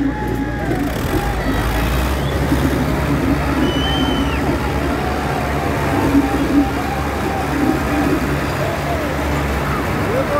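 Diesel engines of two IMT 577 DV tractors running steadily at high load as they pull against each other, pouring black smoke, with crowd voices over them.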